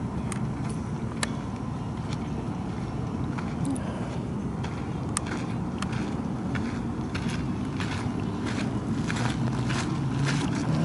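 Steady low wind rumble on the camera microphone, with scattered sharp clicks of gravel and small stones crunching and shifting underfoot, growing more frequent in the second half.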